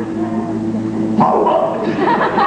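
Live stage-musical sound: a held low note, then a sudden loud cry breaks in about a second in.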